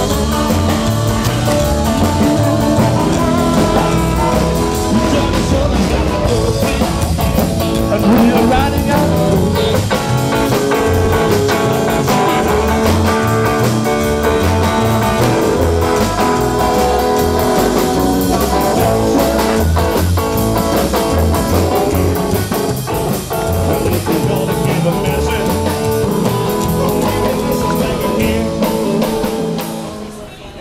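Live rock and roll band playing: upright bass walking steadily underneath, drums, electric guitar and a man singing. The music stops right at the end.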